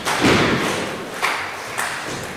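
A wrestler's body hitting the canvas of a wrestling ring with a heavy thud as he is thrown over in a snapmare. Two lighter thumps follow on the ring boards later on.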